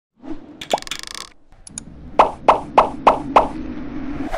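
Cartoon intro sound effects: a short rising bloop with a noisy sparkle burst about a second in, then five quick pops, about three a second, over a steady low hum.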